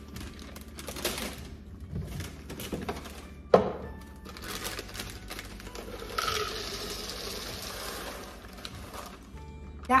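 Plastic bag crinkling and handling noises, with one sharp knock a few seconds in, then frozen sweet corn kernels poured from the bag into a plastic Ninja Bullet blender cup, a dense rattling hiss for about three seconds. Background music underneath.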